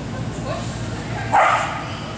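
A dog barks once, a short loud bark about one and a half seconds in, over steady background chatter.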